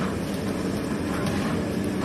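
Steady rushing roar with a low hum from the fire under a large aluminium biryani pot of chicken cooking and steaming.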